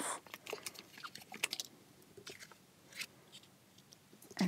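Faint crackling and light clicks of paper and a chipboard sticker sheet being handled, mostly in the first half, with a soft tick near the end.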